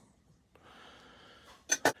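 A faint breath, then two quick sharp clicks close together near the end.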